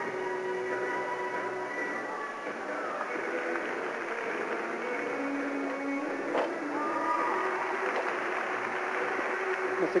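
Music playing in the arena with crowd murmur, the held notes changing every second or so. A single thud about six seconds in, a gymnast landing a leap on the balance beam.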